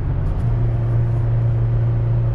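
Toyota 4Runner's 4.0-litre V6 heard from inside the cabin, working under load while towing a trailer uphill on cruise control. About half a second in, the engine note changes as the automatic transmission downshifts, then holds a steady drone at higher revs.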